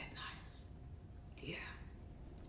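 A pause in a woman's talk: quiet room tone with a low steady hum, a soft breath at the start and a faint murmured "yeah" about one and a half seconds in.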